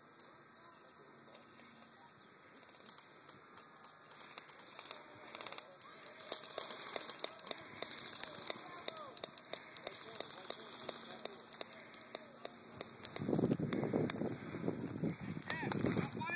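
Skirmish-game guns firing: runs of sharp clicks and snaps that start sparse and grow thicker and louder after a few seconds. Voices join in about three-quarters of the way through.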